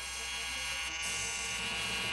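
Corded electric razor buzzing steadily as a man shaves his beard.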